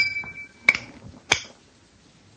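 A coin flicked off a thumb, with a sharp click and a brief high metallic ring, then two more sharp clicks over the next second and a half as it comes down. The second click rings at the same pitch as the first.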